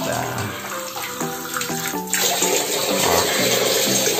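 Water from a homemade PVC-pipe filter running out of a plastic tap into a drinking glass, with background music playing over it.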